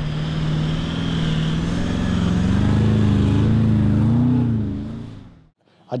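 A four-wheel-drive's engine running under load, its pitch wandering up and down and rising gently; it fades in at the start and fades out about five and a half seconds in.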